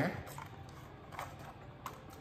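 Faint handling of a plastic phone case, with a few soft clicks as its side clips are worked open.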